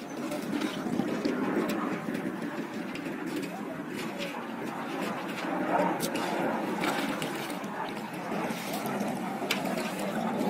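Indistinct chatter of several people's voices in the open air, with a few faint clicks.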